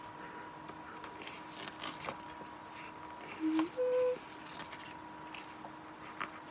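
Thick pages of a hardcover picture book being handled and turned, with faint paper rustles and light taps. About three and a half seconds in, two short hummed notes, the second higher than the first.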